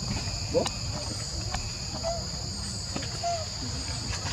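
Steady, high-pitched insect chorus that drones without a break, with a few faint short chirps and scattered light clicks over it.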